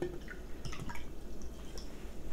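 Sparkling water poured from an aluminium can into a ceramic mug, trickling and splashing, with scattered small ticks.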